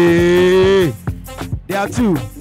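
Dance music playing for a group dance routine. A long, low held note with a drawn-out, moo-like voice cuts off about a second in, then sparse drum hits follow and a falling swoop comes near the end.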